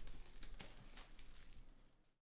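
Plastic shrink wrap crinkling as a cardboard trading-card box is unwrapped and handled, with a few light crackles in the first second before it fades.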